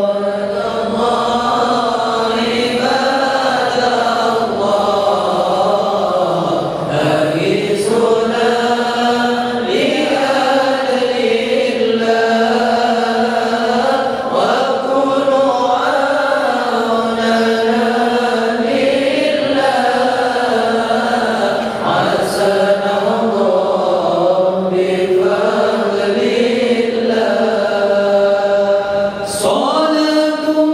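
Group of men chanting a qasidah, devotional Arabic verse, together in unison, the melody moving in long unbroken sung lines.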